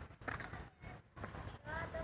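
Faint, distant voices of people talking, with a few light knocks.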